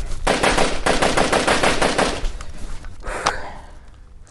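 A burst of automatic gunfire, a machine-gun sound effect: rapid shots at about ten a second for about two seconds, then one more shot about a second later.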